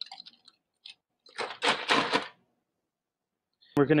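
Ice cubes clinking into a tall glass: a few light clicks, then a rattle lasting about a second near the middle.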